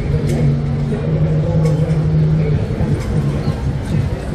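City street traffic at a tram intersection: trams and cars running with a steady low hum, over the voices of people nearby.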